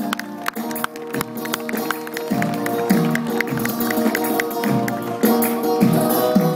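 Live flamenco band playing an instrumental passage with no singing: acoustic guitar chords over many sharp percussive clicks, with a steady low beat coming in about two seconds in.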